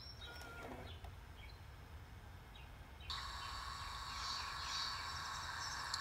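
Sony CCD-TRV212 camcorder starting tape playback: quiet for about three seconds, then the tape's recorded sound comes on suddenly through its built-in speaker as a steady hiss with high, level whining tones.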